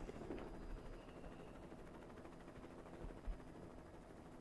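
Faint, steady low room tone from a close microphone during a pause in the talk, with one soft bump a little after three seconds in.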